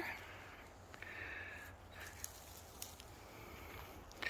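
Quiet forest floor with faint rustles and a few small clicks as a gloved hand disturbs conifer needles and soil around a mushroom.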